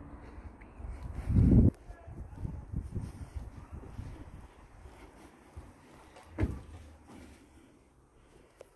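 Handling noise and footsteps as a handheld camera is carried up a path and through a front door, with a loud low rumble about a second and a half in and a short sharp knock about six and a half seconds in.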